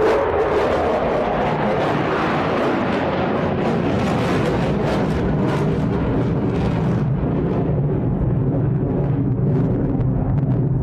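Military fighter jets flying low overhead: a loud, steady jet roar with a falling whine near the start as they pass, its upper hiss fading in the last few seconds as they draw away.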